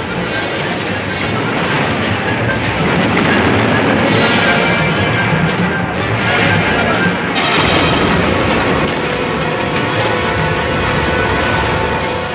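Background music that runs without a break and swells louder a few seconds in.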